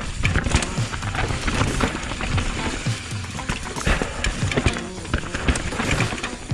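Mountain bike clattering and knocking over roots and rocks on a rough dirt descent, with tyre noise on the dirt and many sharp irregular hits, the hardest about half a second in and again around four to five seconds in.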